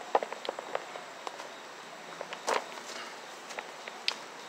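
Footsteps through woodland undergrowth, with irregular short crackles of twigs and leaves underfoot and one louder crunch about two and a half seconds in.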